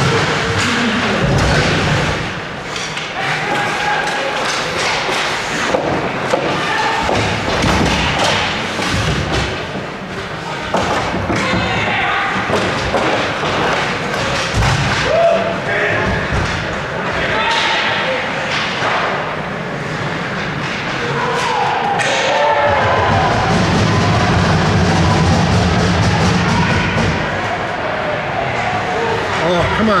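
Ice hockey game sounds in a rink: repeated thuds and knocks of players, sticks and puck against the boards, with indistinct shouting voices throughout.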